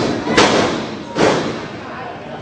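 Two heavy thuds in a professional wrestling ring, about three-quarters of a second apart, each trailing off briefly.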